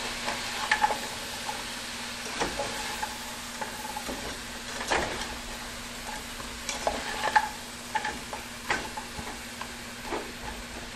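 Frozen broccoli sizzling in hot olive oil in a frying pan while a plastic slotted spatula stirs and flips it, with irregular scrapes and knocks of the spatula against the pan every second or two.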